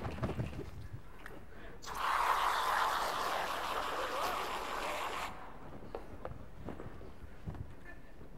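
An aerosol can spraying foam into a plunger cup: a steady hiss of about three seconds, starting about two seconds in. A few light knocks come before and after it.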